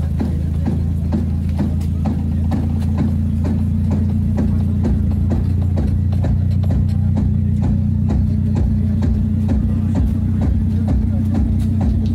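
Music with a sung vocal, played loud through a car audio competition system of 8-inch midrange speakers, horn tweeters and subwoofers. Heavy sustained bass notes sit under a fast, regular ticking beat.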